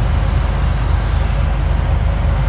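Steady low rumble of a tracked excavator's diesel engine running.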